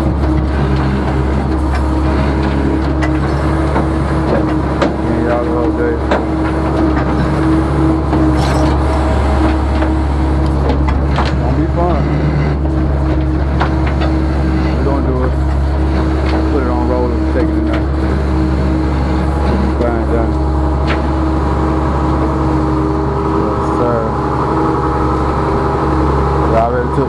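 Rollback tow truck's engine running steadily at idle, a constant low hum with voices talking over it.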